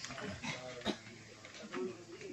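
Faint background voices of people talking quietly, with a short sharp click a little before the middle.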